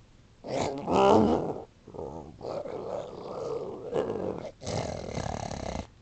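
A man's voice growling and grunting in about five rough, guttural bursts, the loudest about a second in, as an impression of a Gamorrean guard.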